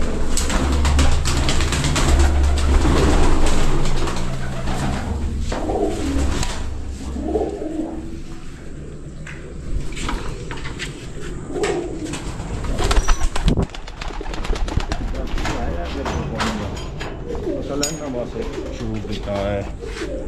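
Domestic pigeons cooing in a loft, with repeated low wavering calls. A low rumble runs through the first few seconds, and scattered sharp clicks and knocks come throughout, the loudest about two-thirds of the way in.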